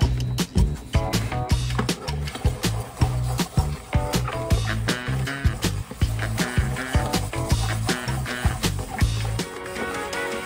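Background music with a steady drum beat and a repeating bass line.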